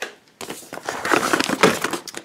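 Shopping bag crinkling and rustling as hands dig through it for groceries, a dense crackle starting about half a second in.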